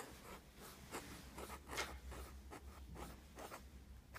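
Broad 1.8 mm calligraphy nib of a fountain pen writing on paper: a quick series of short, faint strokes as the letters of a word are formed.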